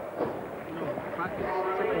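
Indistinct voices in the background over a noisy hiss.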